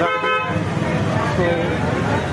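A vehicle horn sounds once, a short steady honk of about half a second at the start, over busy street hubbub and voices.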